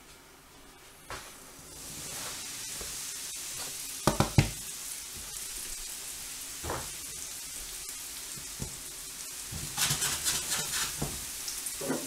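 Cubes of toast bread frying in hot olive oil and margarine in a frying pan: a steady sizzle starts about two seconds in. A few loud knocks come a couple of seconds later, and there is a run of clattering near the end.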